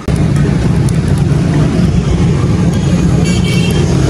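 Loud road traffic noise: a steady low rumble of vehicle engines. A brief high tone, like a horn toot, sounds a little past three seconds in.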